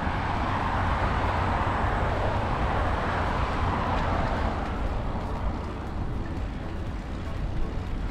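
Car traffic on a distant road, tyre noise swelling over the first few seconds and fading away, over a steady low rumble.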